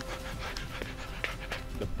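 A dog panting quietly with its mouth open, a soft run of short breaths.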